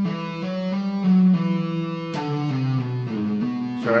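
Electric guitar playing an E minor legato lick at a slow, deliberate pace, single notes joined by slides, hammer-ons and pull-offs rather than re-picking, changing every third to half second. A word is spoken at the very end.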